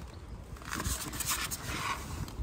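Polystyrene packing rubbing and scraping as the moulded top piece is lifted off a boxed games console, in a few short faint scrapes.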